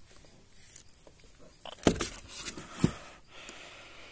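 Handling noise on a plastic kayak: a few sharp knocks and rustles as a large fish and a lip grip are shifted about. The two loudest knocks come about a second apart near the middle.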